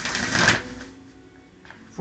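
A deck of oracle cards shuffled by hand: a dense rustling burst in the first half-second, then softer handling with a light tap near the end.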